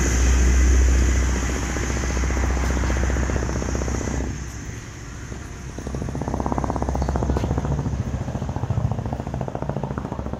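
Steady low engine rumble with a rapid pulse, dipping in loudness for a moment about four to six seconds in and then coming back.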